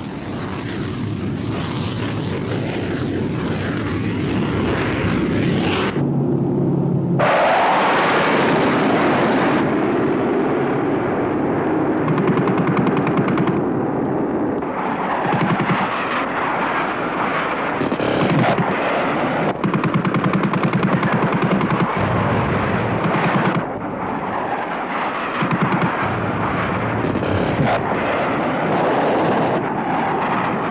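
Jet aircraft noise mixed with repeated bursts of rapid aircraft cannon fire, as in a strafing attack on an airfield.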